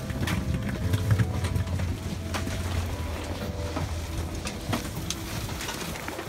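Airliner cabin during boarding: a steady low hum with scattered clicks and knocks from passengers and luggage moving along the aisle.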